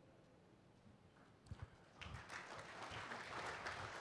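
Near silence, then about halfway in scattered hand claps from a seated audience start up and build into applause.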